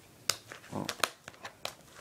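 Plastic shrink wrap on a DVD box set crinkling and crackling as fingers pick at a small rip in it, with a few sharp crackles spread through the moment.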